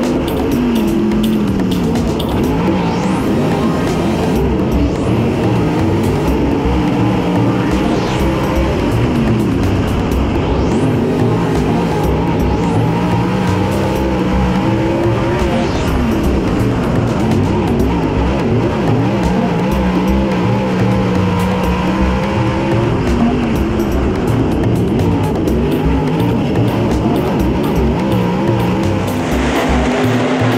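Dirt super late model's V8 engine running hard, heard from inside the cockpit, its pitch rising and falling every few seconds as the driver lifts off and gets back on the throttle.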